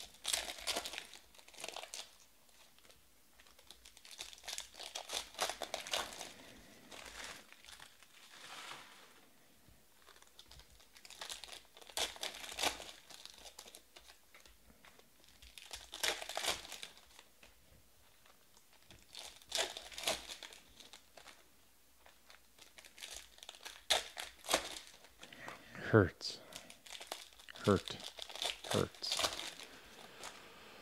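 Foil trading-card pack wrappers crinkling and tearing open in bursts every few seconds, with the cards inside rustling as they are handled. Near the end come three quick, sharply falling squeaks.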